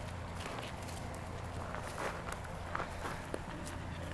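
Footsteps scuffing and crunching on dry packed dirt and grit in a few soft, irregular steps, over a steady low hum.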